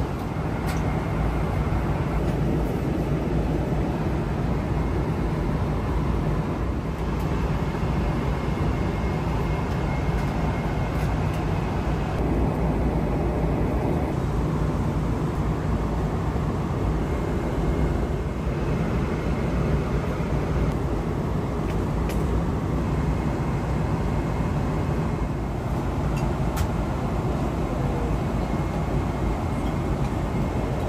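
Steady cabin noise of a Boeing 777-300ER in flight: the engines and the airflow make an even, continuous rush that is heaviest in the low end. A few faint clicks sound over it.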